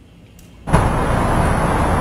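A loud, steady rush of noise that starts suddenly under a second in and holds level, spread evenly from low to high pitch with no tone or rhythm in it.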